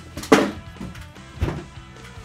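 Background music playing softly, with a sharp knock about a third of a second in and a deeper thump near the middle.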